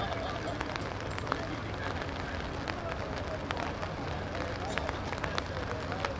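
Faint, distant shouts and calls of cricket players across an open field, over a steady low background rumble, with a few light clicks.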